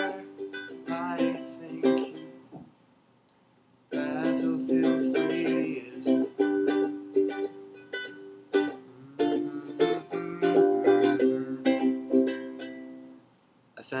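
Ukulele strummed in a steady rhythm, with a pause of about a second early on. The strumming stops shortly before the end.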